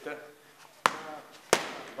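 Two boxing-glove punches land on a handheld focus mitt, sharp slaps about two-thirds of a second apart: a pair of hooks thrown on command.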